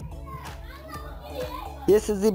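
High-pitched children's voices over background music.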